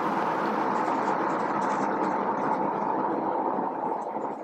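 A steady, even rushing noise that cuts in suddenly and holds level, with faint short scratches of a marker writing on a board over it.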